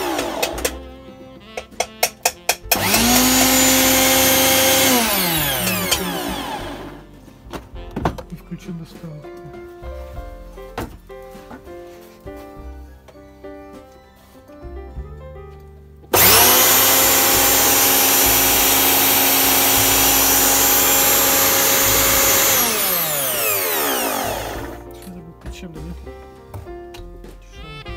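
Bosch Rotak 32 lawnmower's brushed electric motor run with nothing on it. After a few short bursts it spins up to a steady whine for about two seconds, then winds down with a falling pitch. Later it starts abruptly, runs steadily for about six seconds and coasts down again.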